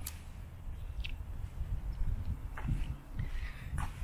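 Wind buffeting the microphone as a steady low rumble while walking outdoors, with a few faint short clicks.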